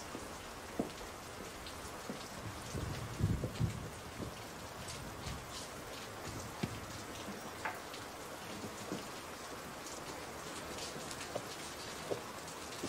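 Steady rain falling, a dense patter of fine drops, with a few dull knocks about three seconds in.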